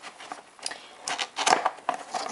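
Cardboard toy box being tilted and handled, giving a few light knocks and scrapes, the loudest about one and a half seconds in.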